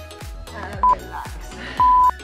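Workout interval-timer beeps over background music with a steady beat: a short high beep about a second in, then a longer beep near the end as the countdown reaches zero, marking the end of a work interval.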